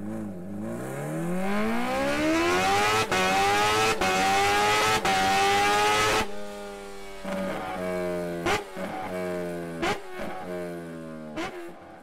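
Engine revving sound effect in an intro sting, rising steadily in pitch for about three seconds and then holding. About six seconds in it gives way to a steadier engine note, broken by several brief dropouts.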